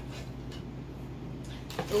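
Clear plastic Ninja blender replacement cup being handled and turned, with a couple of faint light knocks over a steady low hum; a short spoken "oh" comes at the very end.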